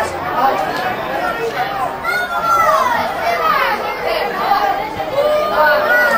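Many voices talking and shouting over one another, the chatter of a football crowd.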